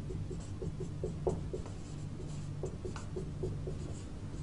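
Marker pen writing on a whiteboard: a quick string of short squeaky strokes as letters are drawn, over a steady low hum.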